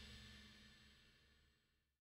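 Near silence: the faint last tail of a rock band's final ringing chord and cymbal dying away.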